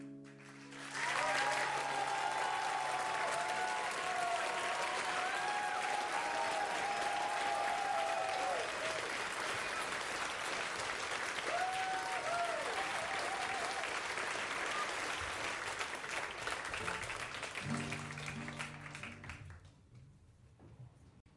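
Concert audience applauding loudly, with whistles through it, after a song. A guitar chord rings out at the start as the applause rises, and guitar notes start again near the end as the clapping dies away.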